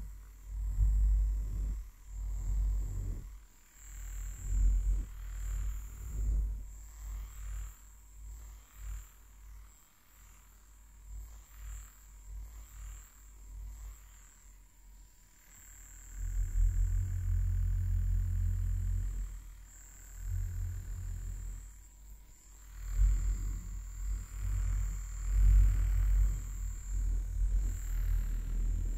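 Silicone facial cleansing brush rubbed over a furry microphone windscreen, giving deep, muffled rumbling strokes. The strokes are short and uneven at first, quieter around the middle, then longer and steadier later on.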